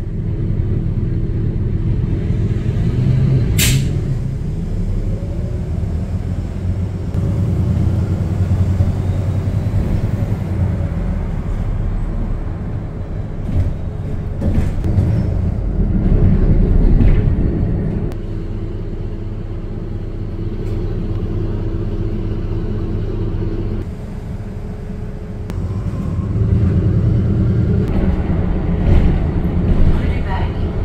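Tour bus engine running as the bus drives through city traffic, its low drone rising and falling with the bus's speed. A brief sharp hiss comes about four seconds in.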